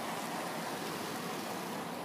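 Steady outdoor background noise, an even hiss with no distinct event.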